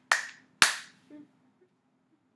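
Two sharp hand claps about half a second apart, each dying away quickly.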